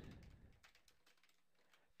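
Very faint computer keyboard typing, close to silence.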